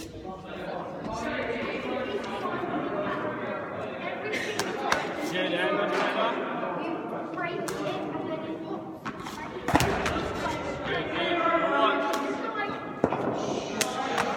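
Voices talking in a large echoing sports hall, with a few sharp knocks of a cricket ball landing: one about five seconds in, the loudest about ten seconds in and another near the end.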